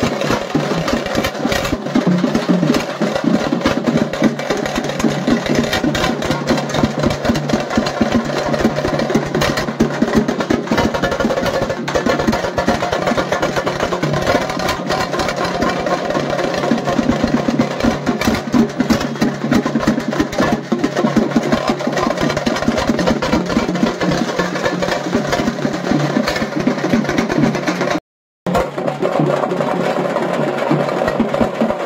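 Loud, fast drum-driven procession music with a dense, continuous beat. The sound cuts out completely for a fraction of a second near the end.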